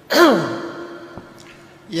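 A man's voice: a short sighing syllable that swoops up and then down in pitch, then a long held vowel on one steady pitch lasting over a second.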